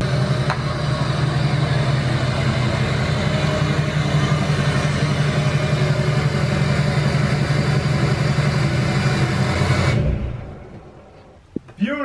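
Diesel pickup truck engine running steadily as the truck reverses up a driveway, then shut off about ten seconds in, its sound dying away.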